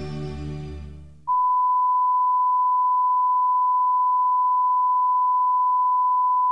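Background music fades out, and about a second in a steady single-pitch test tone starts abruptly and holds unbroken. It is the TV test tone that runs with colour bars after a station signs off the air.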